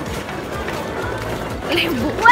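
Outdoor crowd background of people talking, with background music, and a voice near the end.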